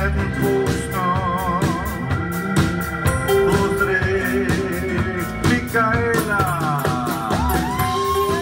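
A live rock band playing an instrumental passage without vocals: drums and bass under held chords, with a wavering lead line early on and lead notes that slide downward near the end.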